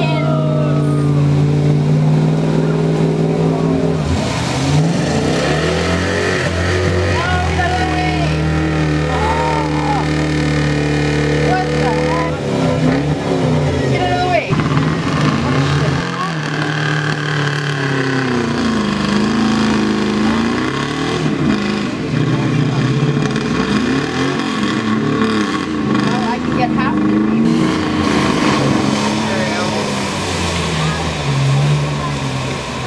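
Dodge pickup truck's engine revving hard as it drives through a mud bog pit, its pitch rising and falling repeatedly with the throttle.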